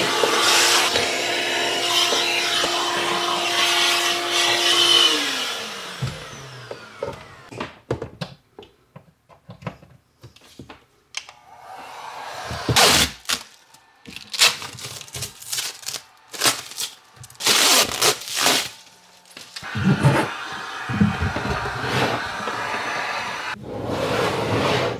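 Shop vacuum running with a steady whine, then switched off about five seconds in, its motor winding down with a falling pitch. After that come scattered knocks, clicks and rustles from the battery case being handled.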